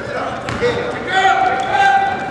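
Basketball game in a gym: indistinct voices of players and spectators calling out, one held call about a second in, over the thuds of a basketball being dribbled on the court.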